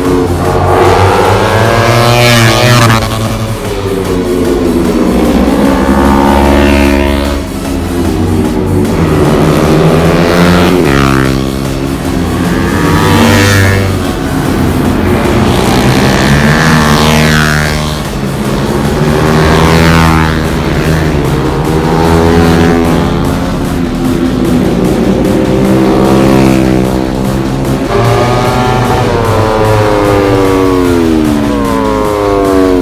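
Sport motorcycles passing at speed one after another, each engine note climbing as it nears and dropping as it goes by, about every three to four seconds. Background music plays underneath.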